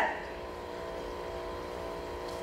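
Steady background hum of the hall's room tone, with several faint fixed tones under it; the end of a spoken word trails off at the very start.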